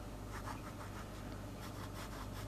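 Ballpoint pen drawing short lines on the squared paper of a spiral notebook: faint scratching strokes.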